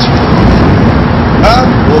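Loud, steady rumble of city street traffic, with a short snatch of a man's voice about one and a half seconds in.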